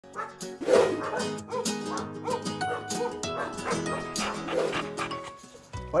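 Intro music with a dog barking in it, once about a second in and again near the end.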